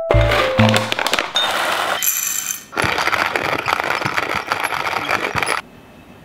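Intro theme music that opens on a deep bass hit and carries a rhythmic percussive beat, then cuts off abruptly shortly before the end, leaving quiet room tone.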